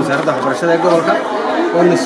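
Speech only: a man talking, with other voices chattering in the background.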